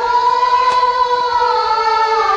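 A woman singing in Yue opera style, holding one long sustained note over quiet accompaniment, her pitch sliding down a little near the end.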